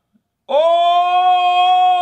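A man's long, high-pitched "ooooh" of amazement, starting about half a second in and held on one steady note, then sliding down in pitch as it fades.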